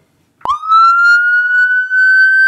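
Ambulance siren switched on: about half a second in it sweeps up fast, then holds a loud, high tone that climbs slowly. It is the sound of an ambulance running emergent, with lights and siren.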